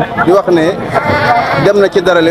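Sheep bleating among loud men's talk.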